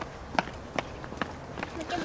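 Footsteps on concrete paving stones: a walking pace of sharp steps, about two and a half a second.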